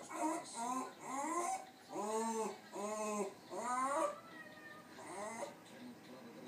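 West Highland white terrier whining, a run of about six short calls, each rising then falling in pitch; the calls grow weaker after about four seconds.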